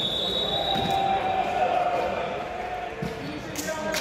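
Volleyball players' voices echoing in a large indoor sports hall, with a ball bouncing on the wooden court and a few sharp knocks near the end. A thin high steady tone fades out about half a second in.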